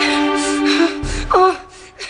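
Dramatic background music with long held notes, and about a second and a half in, a woman's sharp gasping cry of labour pain as the music drops away.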